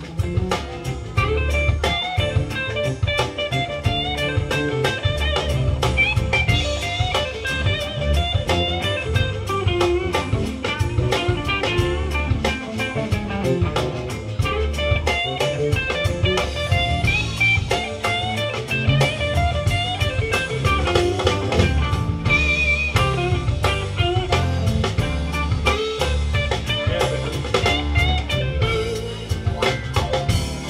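Live blues band playing an instrumental passage without vocals: electric guitar lines over a drum kit keeping a steady beat.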